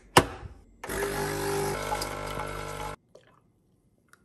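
A capsule coffee machine's lever clicks shut, then the machine runs for about two seconds, a steady pump hum with liquid filling the mug, and stops suddenly.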